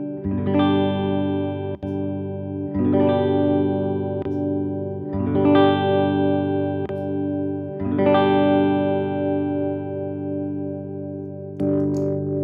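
Tokai LS-186 electric guitar played through a Bouyer ST20 valve amp (EF86 preamp, 6L6GC push-pull output): five chords strummed about every two and a half seconds, each left to ring out, with the last one struck near the end.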